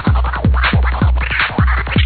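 Electronic DJ music with turntable scratching over a fast, steady kick drum, about four beats a second.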